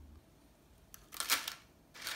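A bundle of dry glass noodles (dangmyeon) handled and laid into a ceramic dish: a short rustling clatter a little past a second in, with a second, weaker one near the end.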